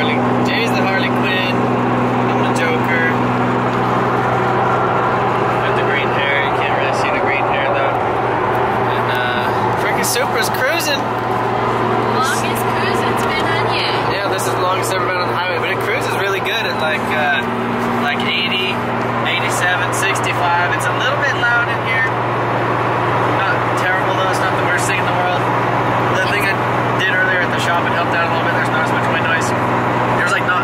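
Toyota Supra MkIV's single-turbo 2JZ-GTE straight-six running at a steady cruise, a constant drone heard from inside the cabin.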